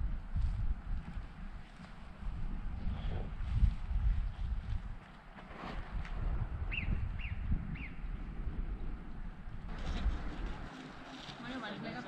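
Walking footsteps on grassy ground, with irregular low thumps on the camera microphone. A little past halfway come three short high chirps, and in the last two seconds faint voices can be heard.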